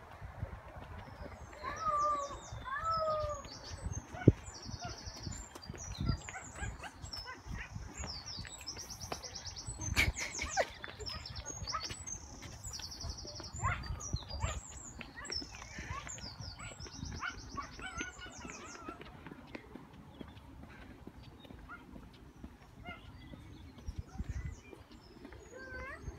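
A few short, bending dog-like whines about two seconds in. Rapid high bird trills repeat through most of the first two-thirds, over footsteps and rustling on a paved path.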